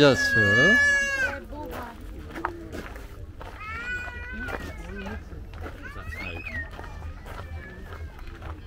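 Voices of passers-by in a busy market lane: a loud, drawn-out high-pitched voice call in the first second or so, then shorter voices and calls over a steady low background hum.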